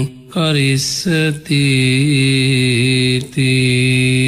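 A man chanting a Buddhist Pali verse in long, drawn-out held notes, broken by a few short pauses.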